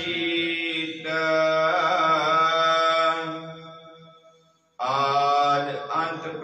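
Gurbani hymn chanted in long held notes. The phrase fades away over about a second to brief silence, then the chanting starts again abruptly a little before the end.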